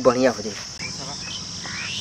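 Steady high-pitched drone of insects such as crickets, with a few short rising chirps over it.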